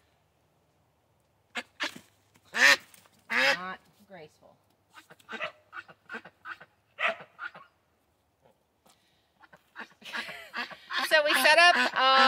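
A white domestic duck quacking loudly in a series of short calls from about a second and a half in until past the middle, the loud quack that marks a female duck. A woman starts speaking near the end.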